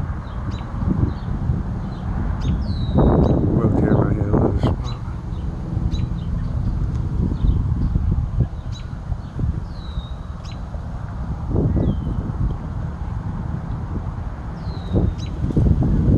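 Birds calling: short high whistles that slur downward, four of them several seconds apart, among scattered high chips, over a steady low wind rumble on the microphone.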